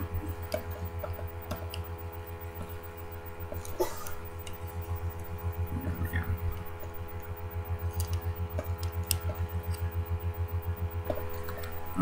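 Steady low electrical hum with scattered light clicks and knocks of a Walther .22 pistol's steel slide, frame and recoil spring being handled, as the spring that has just sprung off is worked back into place.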